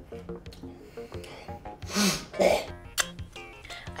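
A person clearing their throat, two short rough bursts about two seconds in, over background music.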